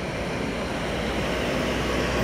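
Steady street noise with a car passing close by, growing slightly louder toward the end.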